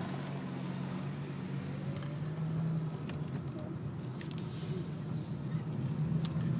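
Car engine running steadily with a low hum, heard from inside the cabin, as the car pulls away from a standstill.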